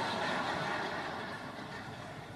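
Diffuse sound from a large seated audience reacting to a joke, a soft wash of laughter and murmur that slowly fades away.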